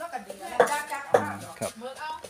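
A metal utensil clinking against a glass jar and dishes, with two sharp clinks about half a second apart, over people talking.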